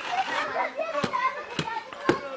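Children's voices chattering and calling out, with a couple of sharp knocks about a second in and a little later.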